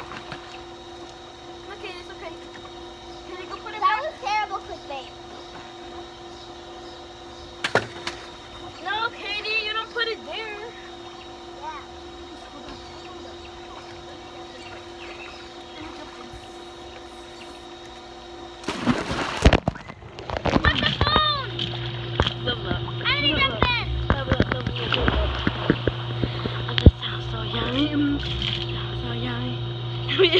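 Water splashing in a swimming pool, with children's shouts and calls. A little before two-thirds of the way through comes one loud, sudden splash, as of someone jumping in; after it the water sounds and voices are louder and closer.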